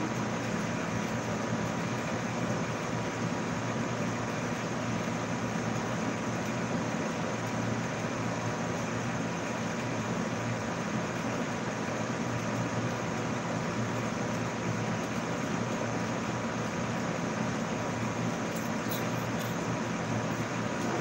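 Steady room background noise, an even hum and hiss with no distinct events, and a few faint clicks near the end.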